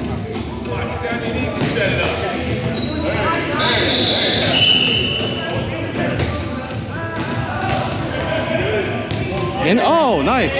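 Ball hits and bounces on a hardwood gym floor, echoing in a large gymnasium, over steady background chatter, with two brief high squeaks about midway.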